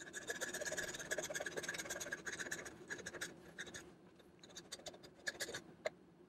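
Irwin fine-tooth pull saw rasping through thick plastic of a water-filter housing in rapid strokes, sped up to four times speed. The sawing thins out after about three seconds, leaving a few scattered clicks.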